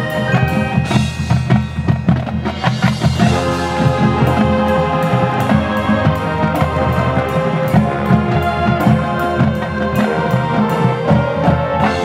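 Marching band playing its field show: drums and front-ensemble percussion beating a busy rhythm under sustained pitched notes, with a dense run of rapid drum strokes about a second in.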